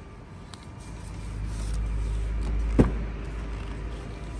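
Low rumble of a handheld camera being moved, swelling for a couple of seconds, with one sharp thump about three seconds in.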